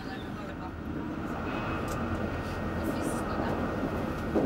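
Steady low rumble of a moving train, slowly growing louder.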